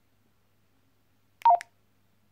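A single keypress on a Baofeng GT-3TP handheld radio, about one and a half seconds in: a click and a short two-note key beep that steps down in pitch. Near silence before and after it.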